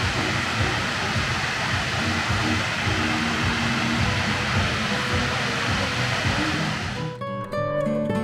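Steady rushing of water falling down a tall sheet-water wall into a pool, with faint music underneath. About seven seconds in it cuts off abruptly to strummed acoustic guitar music.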